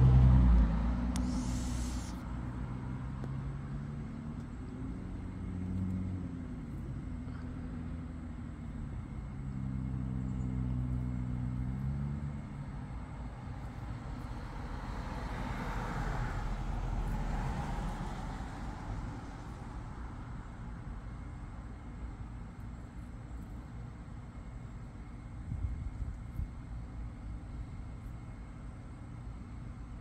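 Cars passing on a street: a vehicle engine's low hum, its pitch wavering, over roughly the first dozen seconds, then another car driving by, its tyre noise swelling and fading around the middle. A few faint knocks near the end.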